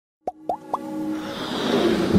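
Intro music sting: three quick rising blips about a quarter second apart, then a swelling whoosh that builds steadily louder.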